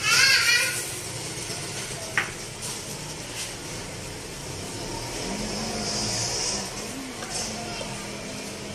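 Large aluminium pot of milk at a boil on a gas stove, bubbling and hissing steadily as a spatula stirs through it, with a short click about two seconds in.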